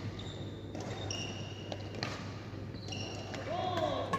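Echoing sports-hall sound: several short, high squeaks of shoe soles on the wooden court and a few sharp knocks, with voices near the end, over a steady low hum.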